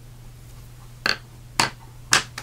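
Two light clicks about half a second apart, about a second in: a watercolour pencil being set down and a water brush picked up from the desk.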